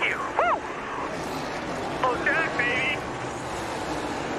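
Celebratory whooping shouts: one long rising-and-falling whoop near the start and two shorter shouts about two seconds in, over a steady rushing background noise.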